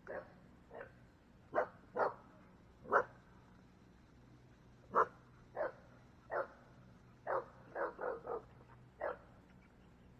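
A dog barking: about a dozen short barks at uneven intervals, with a quick run of three about eight seconds in.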